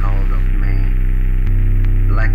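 Post-industrial music drone: a loud, steady low hum with many overtones, a brief voice-like sound at the start, and the drone shifting in tone about one and a half seconds in.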